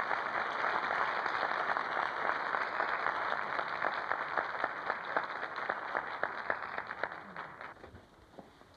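Audience applauding, a dense wash of clapping that thins to scattered claps and dies away near the end.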